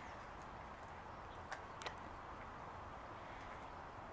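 Quiet steady outdoor background with two faint clicks of dry cat kibble about a second and a half in, as kibble is tipped from a plastic tub onto brick paving for a cat that is starting to eat.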